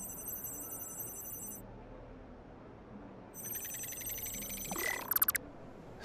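High, shimmering electronic chime-like sound effects: one held for about the first one and a half seconds, then another rising in about halfway through that sweeps and ends in a few quick clicks near the end.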